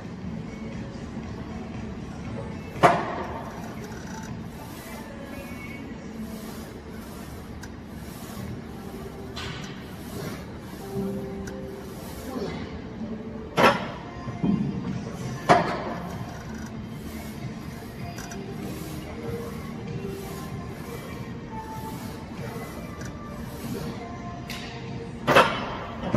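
Music playing under a few sharp metal clanks from a plate-loaded leg press's weight plates and sled. The loudest clank comes about three seconds in, two more follow close together around the middle, and one comes near the end.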